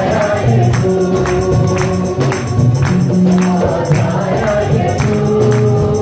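Live gospel worship music: acoustic guitar with a tambourine keeping a steady beat, and singing.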